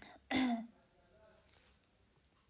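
A person clears their throat once, briefly, about a third of a second in.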